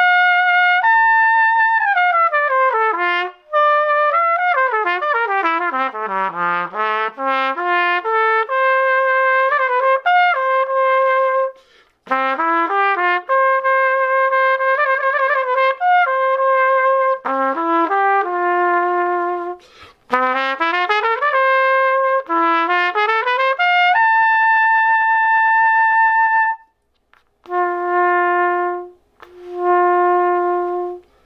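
Large-bore dual-trigger cornet played solo: fast scale runs sweeping down into the low register and back up, broken by short breaths. Near the end comes a long held high note, then two short low notes.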